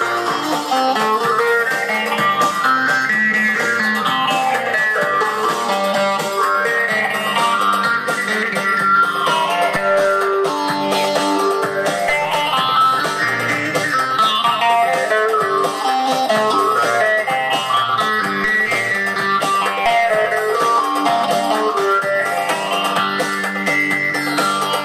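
Long-necked bağlama (saz) played solo: a fast, continuous stream of plucked notes running up and down in repeated phrases.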